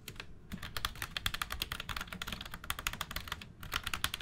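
AI-generated sound effect of computer keyboard keystrokes, a rapid, dense run of key clicks over a low hum of electronic static, made by ElevenLabs' Video to Sound Effects from a silent video.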